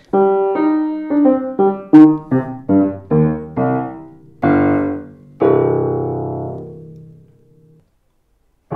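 Welmar A4 upright piano being played: a quick run of about a dozen notes and chords, then two fuller chords, the last left to ring and die away.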